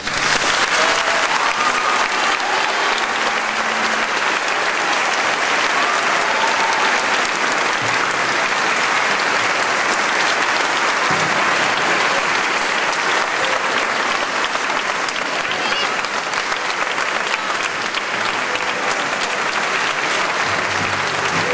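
Audience applauding steadily, starting as the orchestra's final note dies away, with voices in the crowd mixed in.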